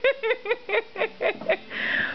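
High-pitched giggling: a quick run of about ten short laughs over two seconds, with a soft rustle near the end.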